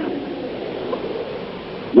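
Steady hiss with no clear voice, between lines of a man's chant; his voice comes back at the very end.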